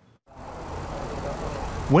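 Outdoor street noise: a steady rushing of traffic that comes in just after a brief silence and builds slightly.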